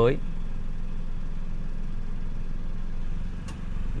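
Steady low hum of the Toyota Raize's 1.0-litre turbo three-cylinder engine idling, heard from inside the cabin, with a faint click about three and a half seconds in.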